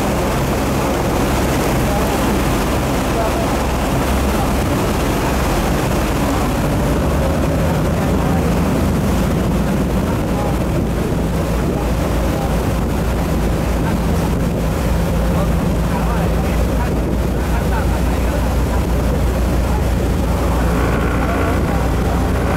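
Boat engine running steadily with a low drone, under a rushing noise of wind and water as the boat moves along.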